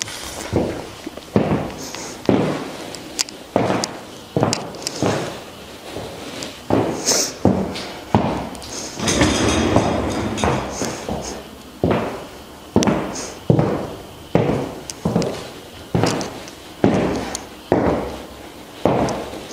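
High-heeled leather boots stepping on a hard studio floor: sharp heel clicks about one a second, with a softer scuffing stretch near the middle.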